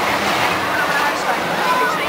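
Disk'O-style spinning-disc ride running along its steel track as the disc sweeps past overhead, a steady rolling rumble like a train, with riders' and onlookers' voices over it.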